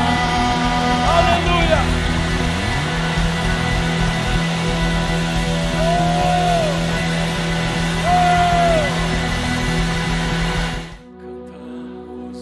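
Live band playing loud rock-style worship music: drum kit with cymbals and electric guitar over sustained chords. About eleven seconds in the band cuts off suddenly, leaving soft sustained keyboard chords.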